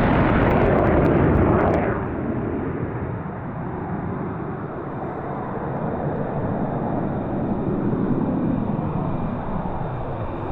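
F/A-18 fighter jet's twin engines in a fly-past: loud jet noise with crackle for about the first two seconds, then it drops off suddenly to a duller, steadier jet sound that swells a little again later on.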